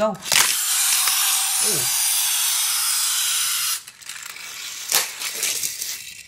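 Hot Wheels Track Builder Lift & Launch set in action: a steady mechanical whir for about three and a half seconds as the toy car is sent off, then a quieter rattle of the die-cast car running along plastic track, with a sharp click about five seconds in.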